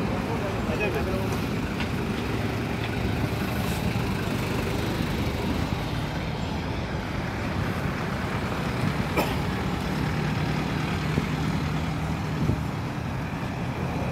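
Road traffic noise: vehicle engines, trucks among them, running steadily with a low hum, and a sharp click about nine seconds in.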